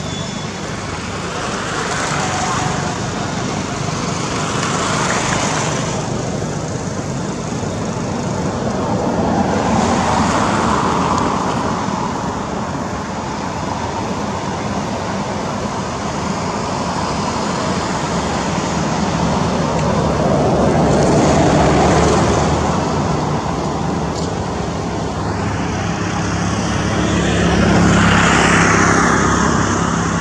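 Road traffic: a run of passing vehicles, the noise swelling and fading in slow waves, with about four louder passes.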